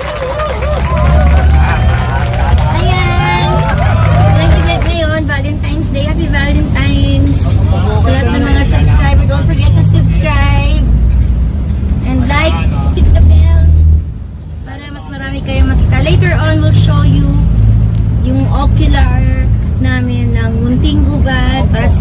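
Engine and road rumble of a moving van heard from inside its passenger cabin, with voices chatting over it; the rumble eases briefly about two-thirds of the way through.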